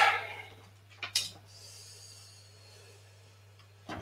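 Quiet room with a low steady hum, and a single short knock about a second in.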